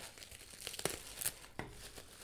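Plastic bubble wrap crinkling as it is handled and cut with scissors. The sound is faint, with a few sharp snips and crackles.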